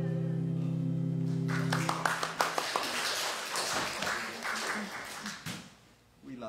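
The congregation's hymn ends on a long held chord. About a second and a half in, applause breaks out and fades away near the end.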